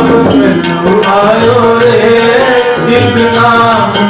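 Sikh Gurbani kirtan: harmoniums playing a melody with voices singing the shabad, over a steady rhythm of tabla strokes.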